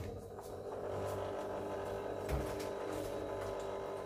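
Mini fridge door pulled open, with a soft thump about two seconds in, over a steady hum.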